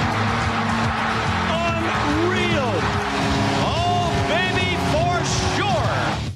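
Sports-radio intro montage: music mixed with sports sound clips, a dense wash of crowd noise with many short rising-and-falling whoops or squeals over held tones. It cuts off suddenly at the end.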